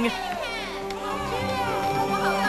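Many voices singing together over a musical backing, a cheerful crowd singing with children's voices among them.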